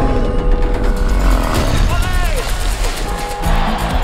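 Film trailer music with deep, heavy low rumbling and impact effects under it. A brief voice sound with a falling pitch comes about two seconds in.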